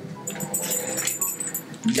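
A dog whining.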